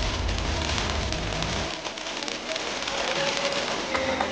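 A handheld firework fountain spraying sparks: a steady hiss thick with fine crackling, over deep bass that stops about a second and a half in.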